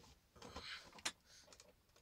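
Faint rustling with a short hiss and one sharp click about a second in, made by a person shifting position.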